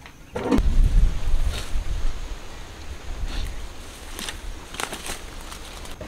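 Wind buffeting the microphone: a low rumble that sets in about half a second in, strongest over the first second, then an even noisy hiss with a few faint knocks.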